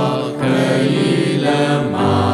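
A Burmese hymn being sung slowly, with voices holding long notes over accompaniment.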